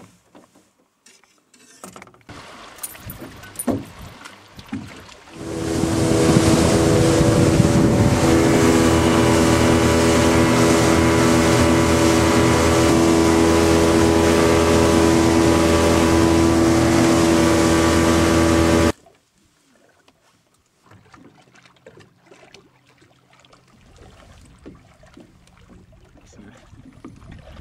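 Outboard motor running at a steady high speed, with wind and water rush as the boat moves. It comes in about five seconds in and cuts off suddenly about two-thirds of the way through.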